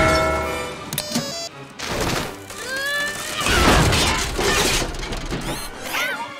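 Cartoon crash sound effects: a church bell clangs and rings out as it is knocked off its tower, then a loud crash of breaking debris about four seconds in, over orchestral film music.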